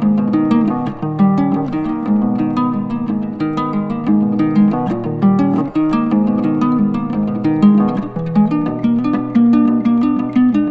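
Instrumental music of plucked guitar strings playing a quick, continuous run of picked notes.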